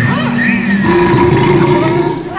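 Amplified sound from a costumed robot act's speaker: a voice for the first second, then a steady held tone.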